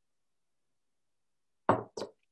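Silence, broken near the end by two sharp knocks in quick succession, the first louder.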